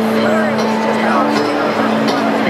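Live rock band in an arena holding a steady low note as the song gets under way, with the audience shouting and cheering over it.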